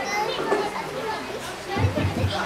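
Children's audience chattering and calling out in a hall, many young voices overlapping, with a few low thumps near the end.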